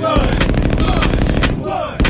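A rapid burst of gunfire-like pulses, a machine-gun effect in the hip hop soundtrack, running for nearly two seconds.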